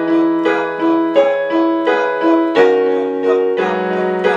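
Piano played with both hands: one chord struck over and over in a steady, even rhythm of straight eighth notes, about three strikes a second. The chord changes about two and a half seconds in, and a low left-hand note joins near the end.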